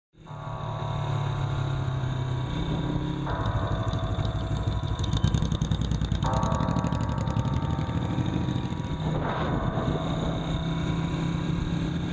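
Motorcycle engine running steadily while the bike is ridden, its note shifting a few times.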